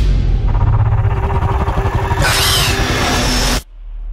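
Dark, dramatic movie-trailer music and sound design with a heavy low rumble, swelling into a harsher, brighter layer about two seconds in, then cutting off suddenly shortly before the end.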